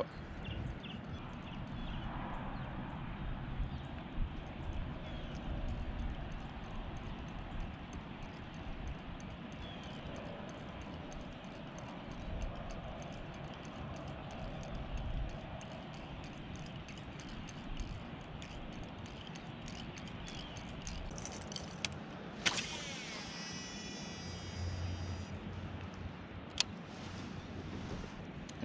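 Fishing reel being cranked to retrieve a topwater lure, with faint regular ticking over the low noise of calm water and open air. A sharp click and a brief high-pitched sound come about 22 seconds in.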